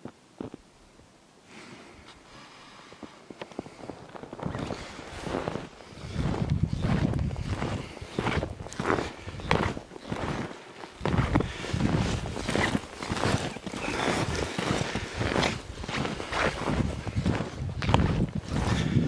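Footsteps in snow at a steady walking pace, about three steps every two seconds, starting about four seconds in after a nearly quiet start.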